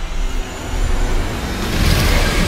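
Trailer sound effect: a deep, loud rumble that swells, with a rushing whoosh building near the end.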